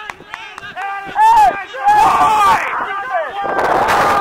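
Rugby players shouting calls on the pitch, with two bursts of rough noise on the microphone, the second starting near the end.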